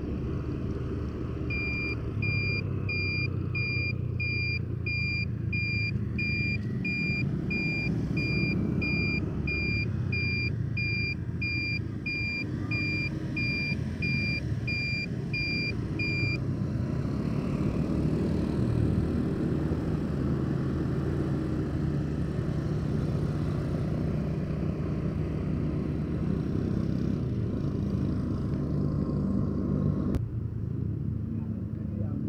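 Motorcycle riding in traffic: steady engine and road noise. A high electronic beep repeats about twice a second through roughly the first half, then stops.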